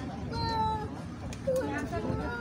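A young child's high-pitched voice: one held call about half a second long, then a shorter wavering one past the middle, over crowd chatter.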